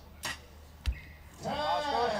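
An arrow striking the target with a single sharp thud about a second in, after a faint click. A voice follows in the second half.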